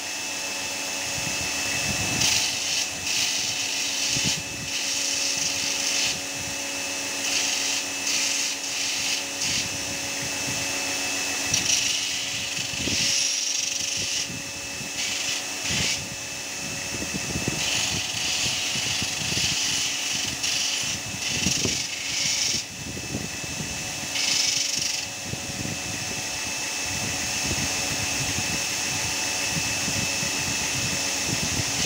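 Belt grinder running with a steady motor hum while a knife is pressed against the moving sanding belt in repeated passes. Each pass of a second or two adds a loud, high grinding hiss.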